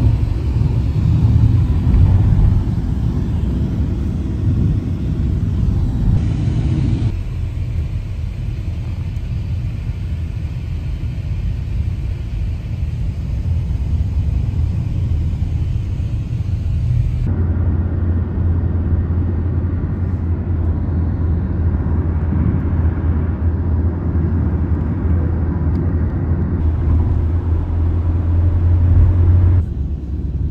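Steady low rumble of engine and road noise inside a moving car's cabin. The noise shifts abruptly twice, about a quarter and just over halfway through, as between spliced driving shots.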